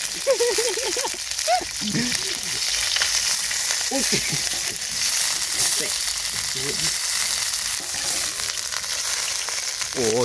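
Chopped aromatics sizzling steadily in hot oil in a stainless steel bowl over a wood fire, stirred with a long wooden stick.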